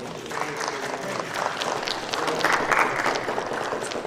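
Church congregation clapping and applauding, with a few voices calling out.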